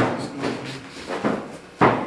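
Two sharp knocks or thumps, one at the start and one near the end, nearly two seconds apart, with a few faint shuffling sounds between.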